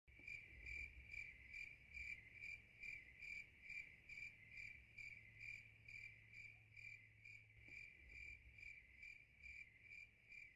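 Crickets chirping in an even, steady rhythm, about two and a half chirps a second, faint.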